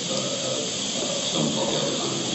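Steady hiss of recording noise in a pause between speech, with faint voices beneath it.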